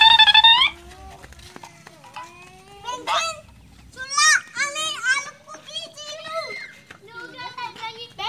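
Children's voices shouting and calling out while playing: one loud, high-pitched shout in the first second, then quieter, scattered calls and chatter.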